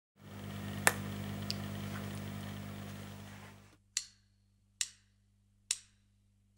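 A film clapperboard snaps shut once about a second in, over a steady low electrical hum. After a short pause come three evenly spaced sharp clicks a little under a second apart: drumsticks counting the band in.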